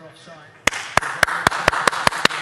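A man clapping his hands in a steady run, about four claps a second, starting about two-thirds of a second in.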